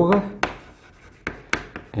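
Chalk writing on a blackboard: a few sharp taps as the chalk strikes the board, spaced irregularly. A brief spoken syllable at the very start.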